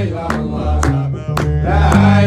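Gnawa music: a guembri plays a deep, stepping bass line under sung chant, and qraqeb iron castanets clack about twice a second, four strikes in all.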